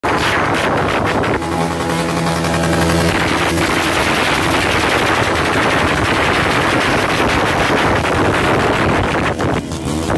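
A pack of motorcycles riding past with their engines revving, the exhausts giving a loud, rapid crackling and popping. A steady-pitched note is held for about a second and a half, starting a second and a half in.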